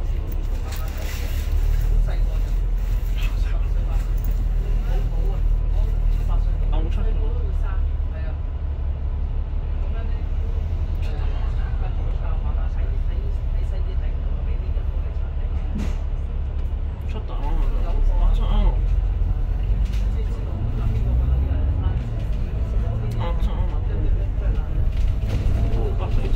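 Double-decker bus's diesel engine idling with a steady low rumble, heard from inside on the upper deck while the bus waits in traffic; in the last several seconds the bus pulls away and the engine note rises. Faint voices throughout.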